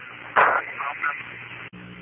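Hiss of the Apollo air-to-ground radio loop, with a short burst of unclear speech about half a second in and a sharp click near the end, after which a steady low hum sits under the hiss.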